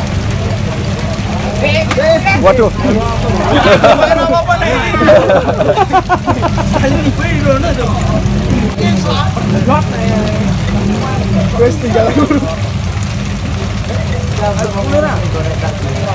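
Several voices talking over a steady low engine rumble, like motorcycle engines idling.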